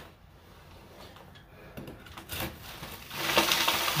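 Hand work on an old horsehair-plaster and wood-lath wall: quiet at first with a few light knocks, then from about three seconds in a rough scraping and crumbling as the plaster is worked loose.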